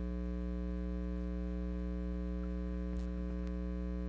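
Steady electrical mains hum from the sound system, a low buzz with a ladder of higher overtones. Two faint clicks come near the end, the microphone being handled as it is picked up.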